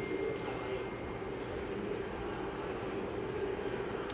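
Pedestal electric fan running with a steady whir.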